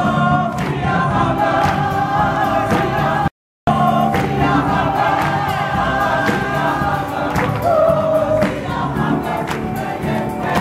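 A mixed choir of men and women singing a gospel-style song, with hand-clapping along in time. The sound cuts out completely for a moment about a third of the way through.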